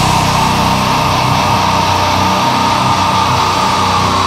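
Heavy metal music: a sustained, distorted chord rings out steadily, with the pounding drums dropping out at the start.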